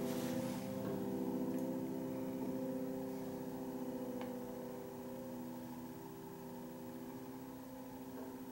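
Grand piano chord left ringing, its sustained notes slowly dying away.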